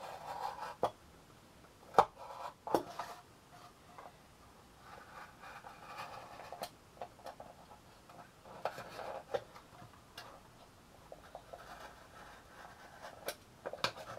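Hands working a small cardboard box: soft rubbing and scraping of card, broken by scattered sharp clicks and taps, the loudest about two seconds in.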